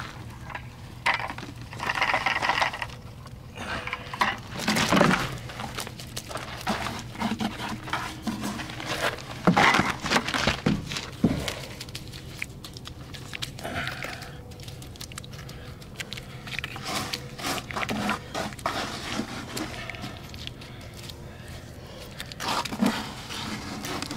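Wet refractory cement mud poured from a plastic bucket into a steel tire-rim mould, then spread and patted smooth by hand: irregular wet scrapes, slaps and knocks, with a few louder knocks about five and ten seconds in.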